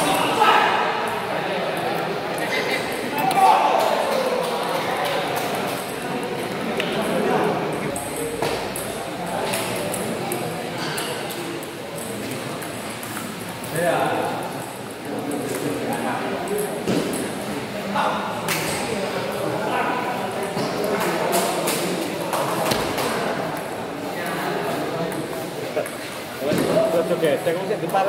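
Table tennis balls clicking off rubber paddles and the table in quick rallies, over the continuous murmur of voices in a large, echoing hall.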